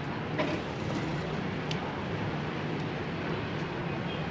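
A steady background rumble, with a few small sharp clicks of plastic building bricks being handled and pressed together.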